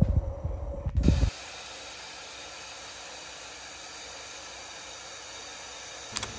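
The tail of a short intro sound, cut off abruptly a little over a second in, then a steady, even hiss.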